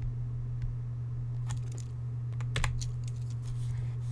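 A steady low electrical hum with a few light clicks and taps, most of them together about two and a half seconds in, from handwriting an entry on the computer.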